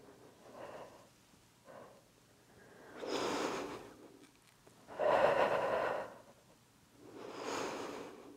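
A woman breathing hard and audibly under exertion during a floor core exercise: three deep breaths about two seconds apart, the middle one loudest, with fainter breaths before them.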